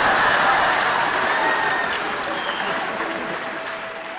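Theatre audience applauding, the clapping dying away gradually.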